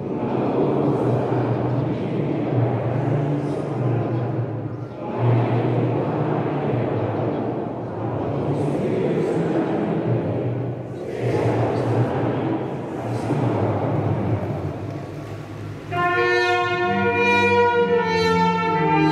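A congregation singing a hymn together, in phrases of a few seconds with short breaths between them. Near the end a brass ensemble comes in with held chords.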